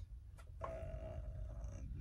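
A man's faint, drawn-out hesitation 'uh', held on one pitch for over a second, over a low steady room rumble.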